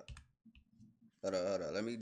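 A couple of faint, short clicks in near quiet, then a man's voice starts talking a little past the middle.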